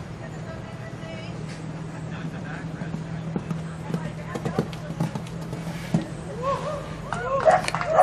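A horse cantering on sand footing, its hoofbeats faint short thuds over a steady low hum. Voices come up near the end.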